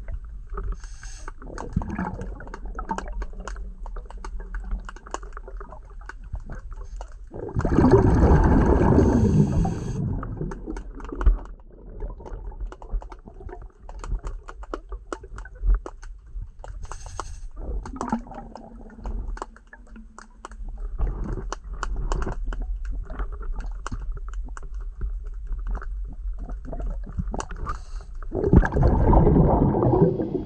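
Underwater sound picked up through a waterproof camera housing: steady fine clicking and crackling, with two louder rushing, gurgling bursts of water or bubbles, about eight seconds in and near the end. A faint low hum comes and goes twice.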